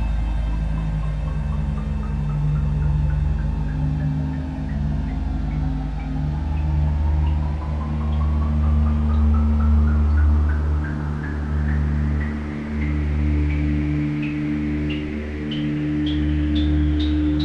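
Generative ambient synthesizer music: sustained low drones under a series of short, bell-like blips that climb steadily in pitch and come faster as they rise.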